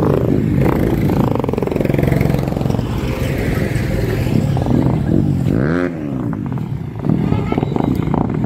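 Motorcycle engine running close by amid road traffic. About six seconds in, an engine revs up and drops back.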